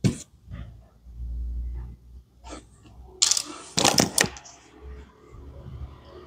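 Small hard plastic toy pieces being handled, with a sharp click right at the start and a quick run of clicks and clatter about three to four seconds in, plus a low rub of handling between.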